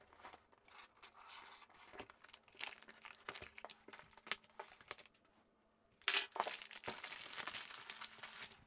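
Plastic mailing bag crinkling and rustling as it is handled and slid off a cardboard box, with scattered small clicks. It goes quieter briefly around five seconds in, then the rustling gets louder and denser from about six seconds.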